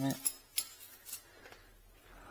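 A few light, sharp metallic clicks, about three in the first second, from hand tools and fittings on a motorcycle's chrome exhaust header while a seized header nut is being worked loose.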